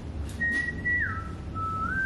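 A person whistling a short phrase in three notes: a high note, a slide down to a lower one, then a step back up that is held near the end.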